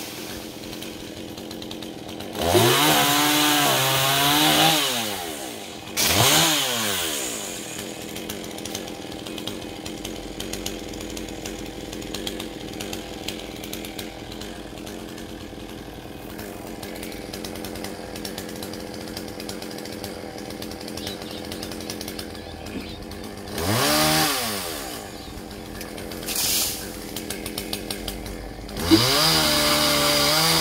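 Gasoline chainsaw, a GZ4350, idling steadily, then revved up hard in four short bursts with the pitch sweeping up and down each time: two in the first eight seconds, one about three quarters of the way through, and one at the very end.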